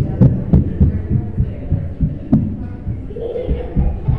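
A run of irregular dull thumps and knocks, several a second, with a few sharper clicks.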